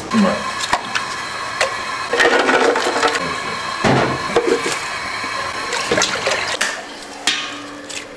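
Ingredients going into a metal stockpot of water: sugarcane sticks knocking against the pot, and dried shrimp and mushrooms tipped in with splashing, loudest about four seconds in. Scattered knocks and clicks run through it.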